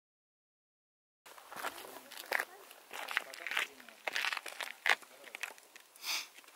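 Silent for about the first second, then a series of short crunches and scrapes of shoes and push-up handles on dry, brittle salt crust, with voices talking in the background.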